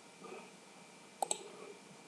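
A computer mouse button clicking: a sharp double click, press and release, a little past a second in.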